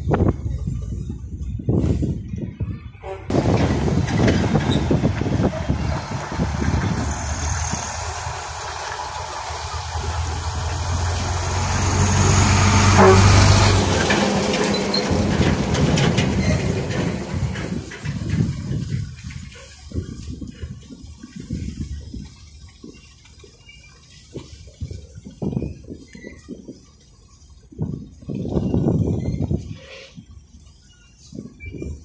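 Wind buffeting the microphone in rough gusts. A few seconds in, an engine, most likely a passing vehicle, swells to its loudest about halfway through and then fades away.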